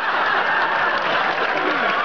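Large theatre audience applauding, with voices calling out over the clapping.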